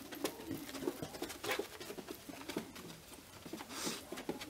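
A dog searching for a scent: faint quick sniffs and soft patter of its paws on carpet, with small clicks as it moves about.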